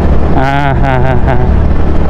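Steady low rumble of a 125 cc scooter riding at a constant speed of about 38 km/h: engine and wind noise, with no change in pace.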